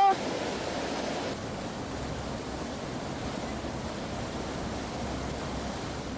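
Fast-flowing mountain stream rushing over rocks, a steady, even rush of white water.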